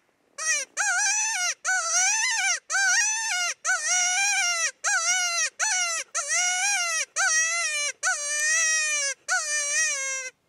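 A predator call sounding a high, wavering distress cry to lure coyotes. The cry repeats about eleven times, each one under a second long, with a pitch that rises and falls.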